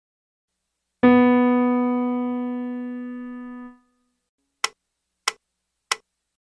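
A single piano note struck once and left to ring for nearly three seconds. It is followed by three short, evenly spaced clicks a little over half a second apart, counting in the beats before the tenor's entry.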